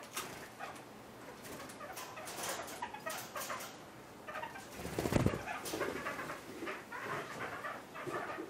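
A kakariki pecking and foraging in a clay dish of chopped vegetables and in wood-chip litter: a run of small beak taps and rustles, with a louder thump about five seconds in.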